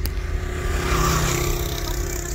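A road vehicle's engine running with a low rumble of wind on the microphone; a steady hum and a rush of noise swell about a second in.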